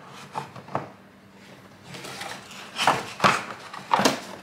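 Cardboard packaging being handled and lifted out of a coffee maker's box: a few light knocks early on, then louder scraping and knocking about three seconds in.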